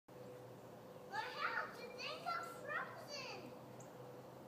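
A young child's high-pitched voice calling out in three or four short, wordless shouts between about one and three and a half seconds in, over a faint steady hum.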